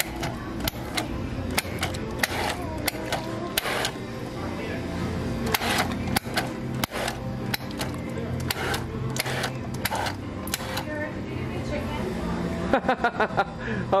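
Self-serve soda fountain pouring drinks into a paper cup, the cup pressed against one dispenser lever after another, with many irregular clicks and knocks over a steady background hum and din of voices.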